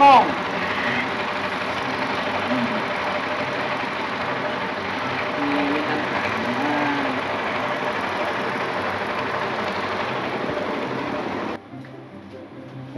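A motor running steadily with an even, pulsing drone, cutting off suddenly near the end; a couple of short voiced sounds rise over it in the middle.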